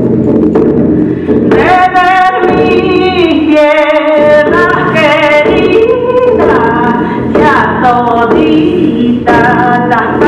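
Singing led by a woman's voice, in long held notes that slide up and down in pitch, over a steady low accompaniment.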